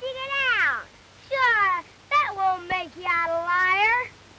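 Children's high-pitched wordless calls: about five drawn-out cries that rise and fall in pitch, one after another.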